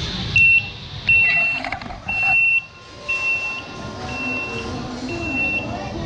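Shinkansen-shaped sushi delivery cart on an express conveyor rail, sounding a high electronic beep about once a second, six times: the alert that an order has arrived at the table for pickup.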